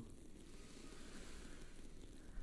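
A pause in the music, close to silence: only faint low-pitched background noise is heard.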